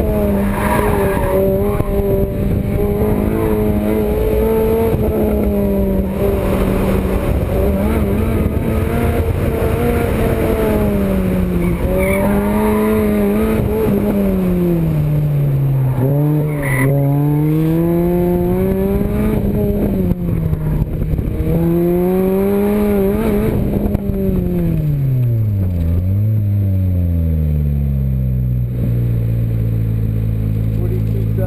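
Lotus Elise SC's supercharged four-cylinder engine heard from the open cockpit, its revs swinging up and down over and over as the car slides around an autocross course, with brief tyre squeal. About four seconds before the end the revs fall away and the engine settles to a low, steady idle.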